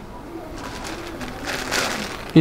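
Clear plastic packaging crinkling and rustling as wrapped T-shirts are picked up off a pile, loudest near the end.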